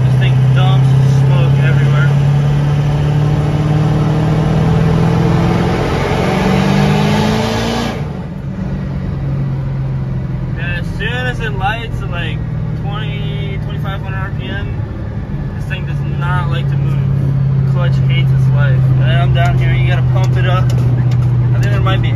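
Ford 6.0 Powerstroke turbo-diesel V8 pulling hard in fourth gear, heard from inside the cab, with a rising rush and hiss as the revs climb while the worn-out clutch slips. The hiss cuts off sharply about eight seconds in as the pull ends, and the engine runs on more quietly before building again near the end.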